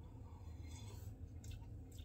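Faint sipping and swallowing of coffee from a cup, with a couple of small clicks, over a steady low hum.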